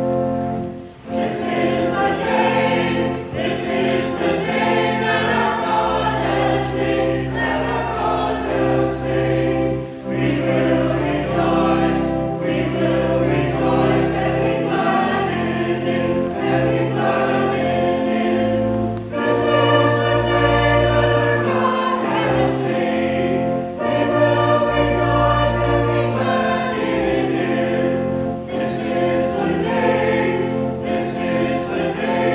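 Small mixed church choir of men and women singing together, with held chords over an accompaniment of sustained low bass notes.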